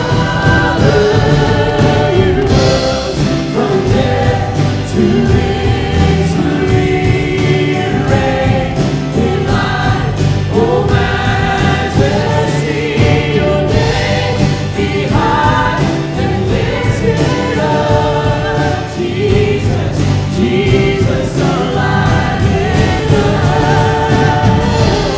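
Church worship band and choir singing a contemporary praise song, with guitars and keyboard over a steady beat.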